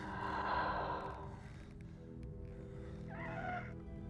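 Darth Vader's failing respirator breathing in laboured, wheezy breaths: a hissing breath at the start and a short rising-and-falling wheeze a little after three seconds. Soft orchestral score with held low notes runs underneath.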